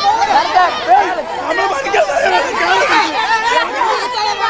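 A crowd of many voices talking and shouting at once, loud and overlapping, with no single speaker standing out.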